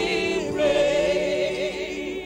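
Several voices singing a gospel song, with vibrato wavering on the held notes.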